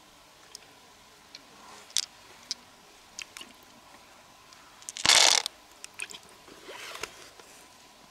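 Close-up handling of an opened freshwater mussel and loose pearls: scattered small clicks, a short, loud crunch about five seconds in, and a softer crunchy rustle near seven seconds.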